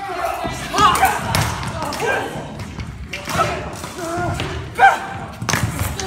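Stage-fight rehearsal: shouts and cries from several actors mixed with thuds of feet and bodies on the stage floor, the loudest thud about five seconds in.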